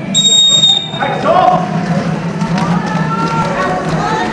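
A referee's whistle blows once near the start, a steady high tone lasting about a second, signalling the start of a roller derby jam. Players and onlookers then shout and call out as the skaters start moving.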